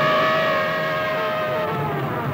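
Dramatic background-score sting: one high sustained note, held steady over a pulsing music bed and fading out near the end.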